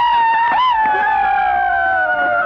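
High-pitched ceremonial singing: a voice holding one long note that slowly falls in pitch.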